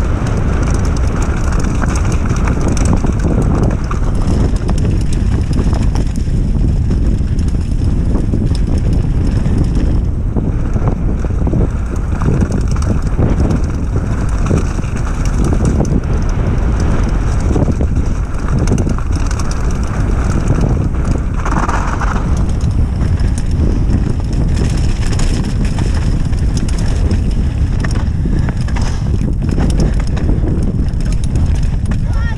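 Wind buffeting the action camera's microphone during a fast mountain-bike descent, with the continual rattle and clatter of the bike and its tyres over loose stones.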